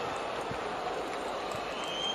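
Stadium crowd noise, a steady wash of cheering and applause as a goal is celebrated.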